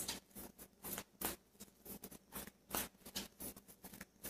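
A deck of tarot cards shuffled by hand: faint, irregular soft clicks and slaps of the cards, several a second.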